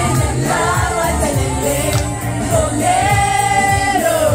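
Karaoke: a woman singing into a microphone over a loud backing track, holding one long note near the end.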